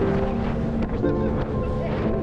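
Solar 4.7 inflatable jet boat running upriver under power: a steady engine and jet-drive drone mixed with rushing water against the hull and wind on the microphone.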